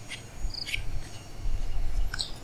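Insects chirping, with a short high chirp a little after half a second in, over a low rumble that grows louder in the second half.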